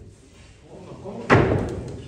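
A length of timber lumber knocked down onto a wooden stage frame: one sharp, loud wooden knock a little over a second in, dying away quickly.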